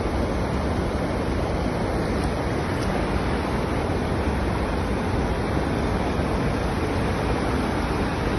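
Fast, shallow mountain torrent rushing over rocks: a steady, unbroken whitewater rush.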